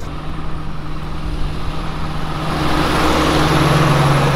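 John Deere 8330 tractor's six-cylinder diesel engine running with a steady low hum and a faint high whine, growing louder over the last second and a half as it comes close.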